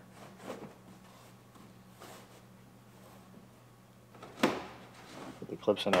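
Plastic wheel liner being worked into a car's rear wheel well: mostly quiet handling over a steady low hum, with a few faint clicks and one sharp knock about four and a half seconds in.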